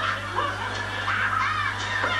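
A person snickering and chuckling quietly, over a steady low hum.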